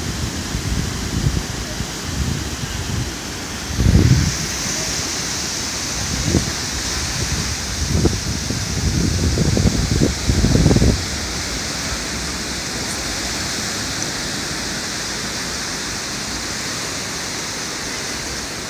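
Big surf breaking and washing up a sand beach, a steady hiss of the sea. Low rumbling gusts of wind hit the microphone about four seconds in and again between about eight and eleven seconds.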